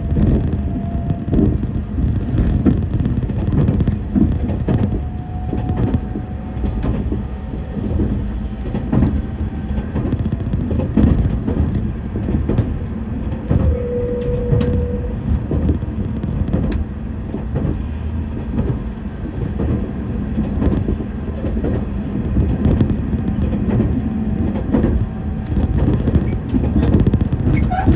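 Running noise of a moving train heard from inside the passenger car: a steady low rumble of wheels on rail with scattered short knocks and clatter.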